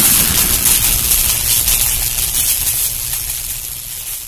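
Intro sound effect: the long tail of a boom, a loud hiss with a low rumble underneath that slowly fades.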